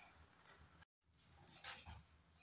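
Near silence: faint room tone, cut by a moment of dead silence about a second in, then a short soft rustle near the end as the phone is moved over the open book.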